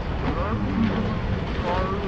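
Steady low rumble of wind noise on the microphone, with brief indistinct voices over it about half a second in and again near the end.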